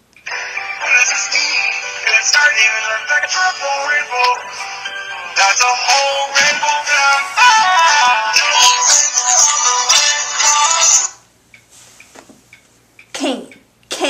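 Mobile phone ringtone playing a song with sung vocals, starting abruptly and cutting off suddenly about eleven seconds in as the incoming call is answered.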